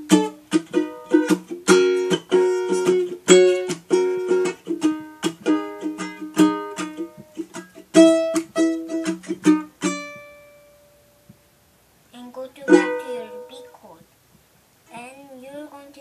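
Ukulele strummed in a quick rhythmic chord pattern with sharp percussive strokes. The playing stops about ten seconds in and the last chord rings out and fades, then a few more strums come a couple of seconds later, and a child's voice starts near the end.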